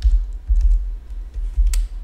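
Computer keyboard typing: a handful of irregular keystrokes, each with a dull thump.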